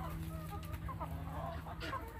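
Backyard chickens clucking faintly in short, scattered calls, over a steady low hum.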